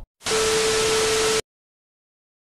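TV static sound effect: a burst of even hiss with a steady tone underneath, lasting about a second and cutting off suddenly.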